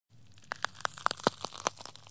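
Close-miked crunching of crisp food being bitten and chewed: an irregular run of about ten sharp crunches in under two seconds, over a faint low hum.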